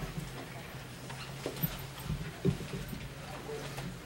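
Quiet pause in a church with a steady low electrical hum from the sound system, under faint scattered rustling and a few soft knocks as the congregation takes out Bibles and turns pages.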